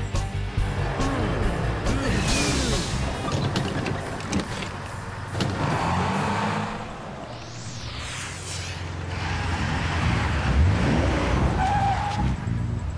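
Cartoon soundtrack: background music over vehicle sound effects, as a city bus pulls up to a stop, with gliding whooshes and a rising-then-falling sweep partway through.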